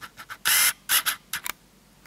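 A series of short rustling scrapes, like foliage or material being handled. The longest and loudest is about half a second in, with a couple more near one second and a second and a half.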